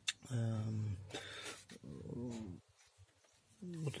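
A man's voice making drawn-out hesitation sounds between words, with a short click at the start.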